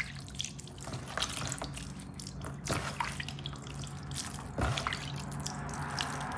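Soapy water scooped up by hand in a plastic tub, dripping and splashing back in short irregular drops. Near the end it turns to a steady trickle as water runs from cupped hands onto a sponge.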